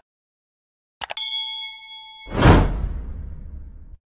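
Sound effects for a subscribe button: two quick mouse clicks about a second in, then a bell-like ding that rings for about a second. It is followed by a loud whoosh that fades away.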